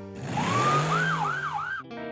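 Cartoon police-car siren: one rising wail, then three quick rising whoops over a rush of noise, cut off suddenly near the end.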